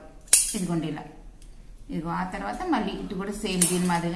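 Tailor's scissors closing once with a sharp metallic snip through a fabric piping strip, about a third of a second in.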